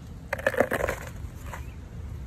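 Baking soda tipped from a measuring cup into a plastic mixing bowl: a short gritty rush of powder with a few light clicks. It starts about a third of a second in and fades after about a second.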